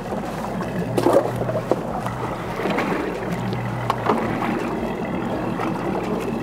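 Wind and choppy water around an aluminium fishing boat, with a steady low hum underneath and a few light knocks against the boat.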